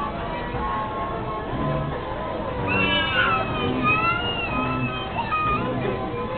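Carousel music playing steadily as the ride turns, with a small child's high-pitched voice squealing and calling out from about halfway through.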